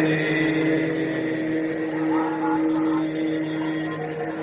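A single steady note held for nearly four seconds, with faint sounds wavering behind it.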